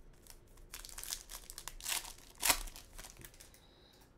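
Foil wrapper of a trading card pack crinkling as it is opened and the cards slid out: a run of short rustles, the loudest about two and a half seconds in.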